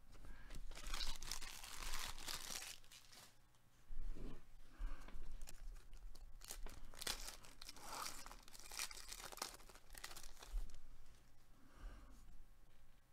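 A foil NBA Hoops trading card pack torn open and its wrapper crinkled by hand, in a run of irregular crackles and rips.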